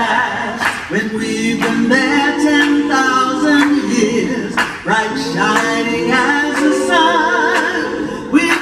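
Mixed vocal group singing a cappella in harmony. The lower voices hold long chords twice, while a lead voice with vibrato sings above them.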